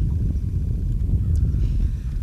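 Wind buffeting the microphone: an uneven low rumble with no clear tone.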